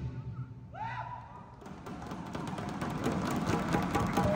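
Lion dance percussion of large drum, gongs and cymbals ringing out into a brief lull; about a second and a half in, soft rapid drumming and cymbal strikes start up again.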